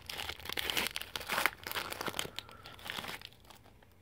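Foil wrapper of a trading-card pack crinkling and tearing as it is pulled open by hand, in dense crackles that die down near the end.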